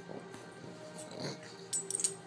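A dog rolling around on a quilt: soft fabric rustling and scuffling, with a short burst of sharper, louder scuffs near the end.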